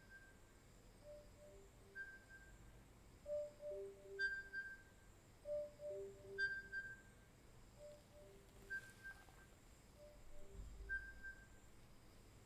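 Meditation timer's alarm chime: a short three-note figure, two lower notes followed by a higher one, repeating about every two seconds. It is loudest in the middle repeats and softer toward the end, signalling that the meditation period is over.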